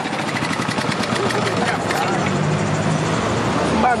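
Motorised sugarcane juice press running, its flywheel and gears turning with a steady, fast mechanical rattle.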